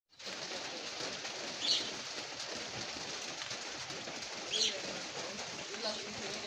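Steady hiss of monsoon rain with a bird giving a short, high call twice, about three seconds apart.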